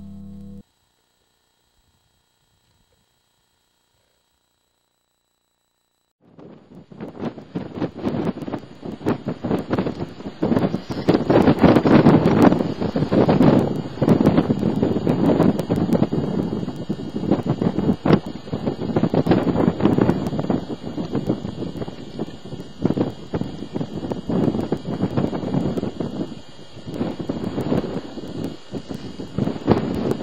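Background music cuts off at the very start, followed by several seconds of dead silence. About six seconds in, loud, rough wind noise on the camera microphone begins and rises and falls in irregular gusts.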